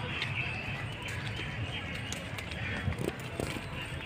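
Outdoor park ambience: a steady rumbling noise, typical of breeze buffeting a phone microphone as it is carried along, with a few faint bird chirps and faint distant voices.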